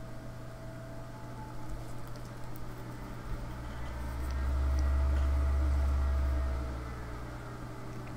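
A low rumbling hum that swells up about halfway through, holds for about three seconds and fades away, over steady faint room noise.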